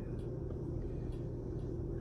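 A steady low rumble of background noise, with no other distinct sound.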